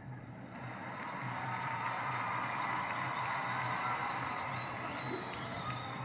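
A large crowd cheering and applauding. The noise swells over the first couple of seconds and then holds steady, with a faint high whistle about halfway through.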